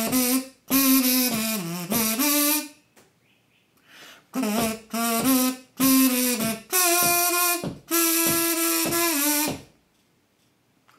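A melody hummed in buzzy, kazoo-like notes through a small instrument held between the lips, beating out a riff's rhythm in short phrases. There is a pause a few seconds in, then a second run of held and sliding notes.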